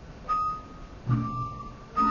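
Javanese gamelan playing a slow, sparse passage: two struck bronze notes about a second apart, each a clear ringing tone that dies away, the second one with a deeper note under it.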